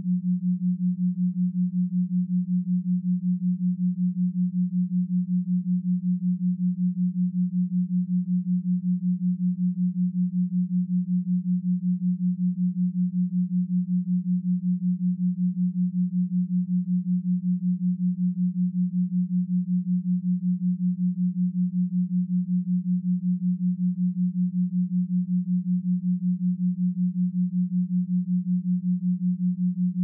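Binaural-beat tones: a steady, low pure tone that pulses evenly several times a second, with nothing else heard.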